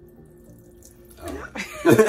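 Water poured in a thin stream from a plastic bottle onto ice in a glass, building into a slush; the pouring is faint at first and grows louder about a second in. Near the end come louder knocks as the plastic bottle is handled and set down on the stone counter.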